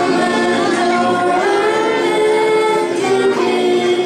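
A small group of children singing together in held, sustained notes, accompanied by keyboard, violin and cello.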